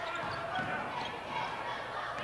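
Gymnasium ambience during a basketball game: a steady mix of crowd voices and court noise from play on the hardwood.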